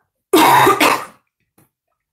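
A woman coughing twice in quick succession, about a third of a second in.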